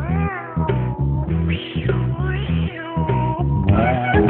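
Cat meows, several drawn-out calls that bend up and down in pitch, laid over a music track with a repeating bass line.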